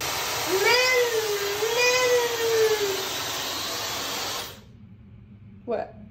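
Hair dryer with a diffuser attachment blowing at full speed; it cuts off about four and a half seconds in. A high voice gives a long drawn-out sound over it in the first few seconds.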